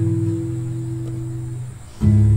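Acoustic guitar chord left ringing and slowly dying away, with no new strum until the next one lands right at the end. It is picked up by a Behringer SB 78A condenser microphone aimed at the guitar.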